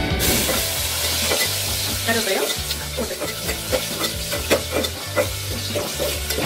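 Chopped onion, tomato and green chilli sizzling in hot oil in a metal pot, with a metal spatula scraping and clicking against the pot as the mixture is stirred.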